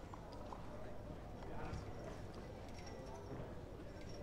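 Faint courtside background: distant voices too indistinct to make out, with a few light clicking taps over a low steady hum.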